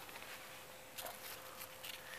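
Quiet background ambience with a faint steady hum and a few soft clicks, one about a second in and more near the end.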